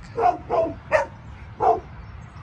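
A dog barking in short single barks, four in quick, uneven succession.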